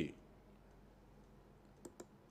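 Near silence with a faint steady low hum, broken by one short click shortly before the end.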